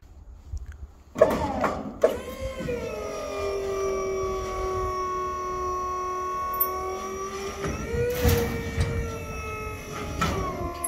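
Flip tarp drive motor whining steadily as it swings the tarp arms over the trailer. Two sharp clicks come in the first two seconds, then the whine dips in pitch as it takes up, holds level and shifts slightly near the end.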